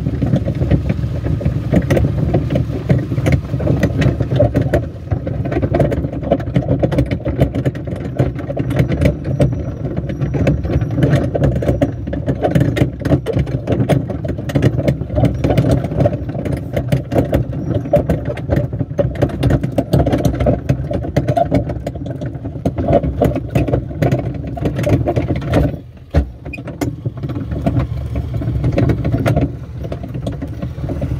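Barrel train ride: the small engine of the towing vehicle running steadily under load, with the plastic barrel cars rattling and knocking as they roll over rough ground. The noise drops away briefly near the end, then picks up again.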